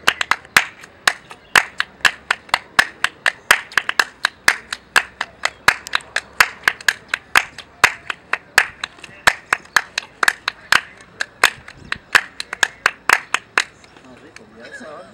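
Two people clapping a Cuban palmas rhythm, sharp bare-hand claps in a steady repeating pattern of about four claps a second.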